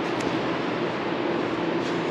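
Steady background noise with a faint hum underneath, the machine and air noise of a large indoor vehicle shop.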